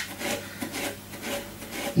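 Tangle Teezer detangling brush drawn through dry afro hair in quick repeated strokes, the bristles scratching through the hair as it is lifted and fluffed.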